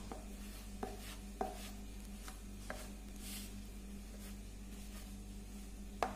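Wire whisk stirring a dry flour mixture in a plastic bowl: soft scraping, with a few light clicks of the wires against the bowl in the first three seconds.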